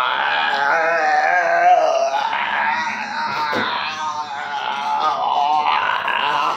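A man's loud wordless vocalizing: long, drawn-out pitched tones that waver up and down, with a brief dip a little after two seconds in.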